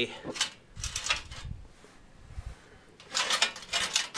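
Steel burner tube being turned by hand on the little metal rails of its circular mount, making metal-on-metal scraping and rattling. There are short bursts in the first second and a longer burst about three seconds in.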